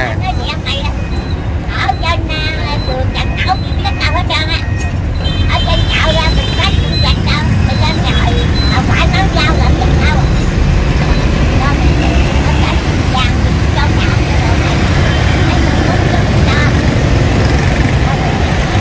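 Steady rumble of heavy road traffic, mostly motorbikes and scooters passing close by, getting louder about five seconds in.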